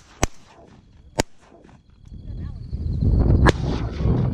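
Shotguns firing at a flock of teal: two sharp shots about a second apart near the start, and a third near the end. A low rumbling noise builds up from about halfway through.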